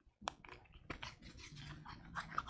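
A quiet lecture room with a few faint short clicks or taps and a faint low murmur in the second half.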